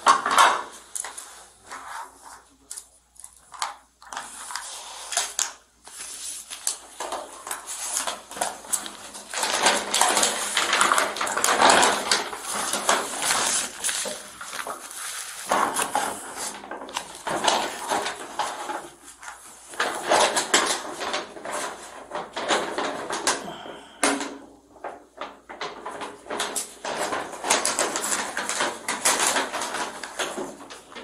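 Close handling noise picked up by a body-worn camera's microphone: irregular rustling, crinkling and light clicks and clatter of small items, such as papers and a plastic packet, being handled on a table.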